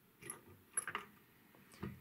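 Faint clicks and light handling noises as the capstan flywheel of an 8-track deck is lifted out by hand, a few small knocks over two seconds; it comes free because its mount has broken off.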